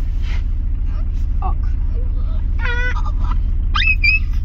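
Steady low rumble of the car's idling engine heard from inside the cabin while stopped in traffic, with short remarks from the passengers over it.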